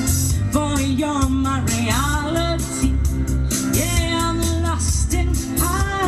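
A woman singing live into a microphone over a Latin-style musical accompaniment with a steady beat and bass, her melody sliding between notes and holding one long note about four seconds in.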